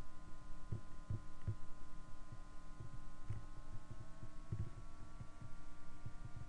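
Background noise with no speech: irregular low thumps under a steady hum, with faint high whining tones that slowly rise in pitch.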